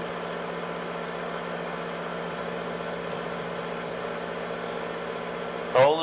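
Film projector running with a steady, even hum. A man's voice cuts in just before the end.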